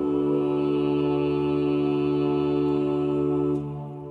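Vocal ensemble holding a sustained chord in a Renaissance polyphonic motet, released about three and a half seconds in, the sound then dying away slowly in the church's long reverberation.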